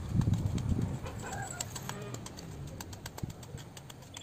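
Short, sharp clicks of a small hand tool working garden soil, with a bird calling about a second in. A louder low rumble fills the first second.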